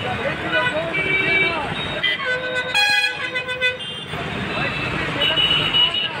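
Vehicle horn honking with one steady held tone for about two seconds in the middle, among voices and road traffic.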